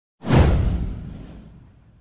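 A whoosh sound effect with a deep low rumble under it. It comes in suddenly, sweeps downward and fades away over about a second and a half.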